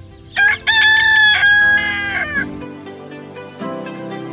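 A rooster crowing once: a short opening note, then one long call that drops at its end. Plucked background music takes over from about halfway through.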